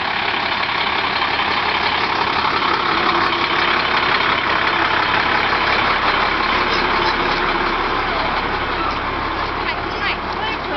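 Fire truck engine running steadily at a crawl close by, with the chatter of a crowd of walkers mixed in.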